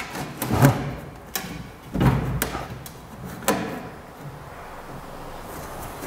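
Gypsum plaster cornice pieces knocking and scraping against a plasterboard ceiling as two 45° mitred lengths are held up and test-fitted at the corner. There are a few dull knocks, about half a second, two seconds and three and a half seconds in, with soft handling noise between them.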